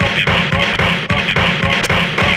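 A live turntablist routine: records manipulated on two vinyl turntables through a Rane DJ mixer, making loud music chopped into a tight, repeating rhythm.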